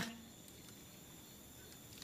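Near silence in a pause between speakers: faint room tone with a thin, steady high-pitched whine, after the tail of a spoken word at the very start.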